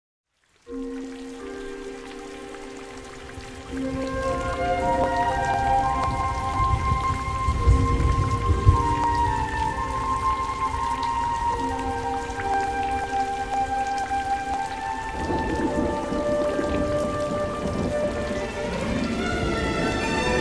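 Steady rain with rumbling thunder, the rain cutting in suddenly just under a second in and the thunder heaviest around the middle. A slow melody of long held notes plays over it.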